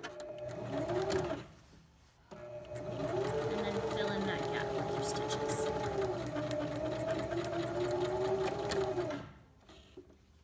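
Electric domestic sewing machine stitching: a short run of about a second, a brief stop, then a steady run of about seven seconds whose motor whine wavers slightly in pitch as the speed changes, stopping near the end.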